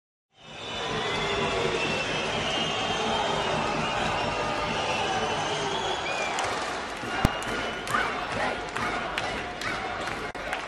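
Basketball game sound in an arena: a steady crowd din with voices, and from about two-thirds through, sharp knocks of a ball bouncing on the court.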